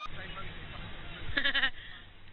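One short, wavering, bleat-like vocal call about one and a half seconds in, over low rumbling background noise.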